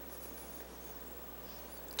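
Faint rustle of Bible pages being turned, over a low steady hum of the room.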